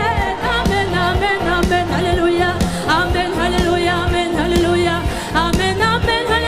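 Live worship music: a singing voice over a band with a steady, driving beat.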